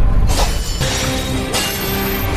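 Soundtrack of an animated fight: a deep low impact right at the start as a blade strikes a monster's hard shell, then a dense burst of noise, over background music whose sustained tones come in just before the middle.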